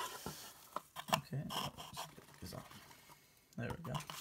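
Rustling and crinkling of shredded paper filler and a fabric drawstring bag as the bag is lifted out of a cardboard box, with scattered short clicks and scrapes.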